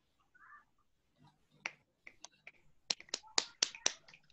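Several people snapping their fingers over a video call as applause for a poem just read. The snaps start sparsely about a second and a half in and grow quicker and louder near the end.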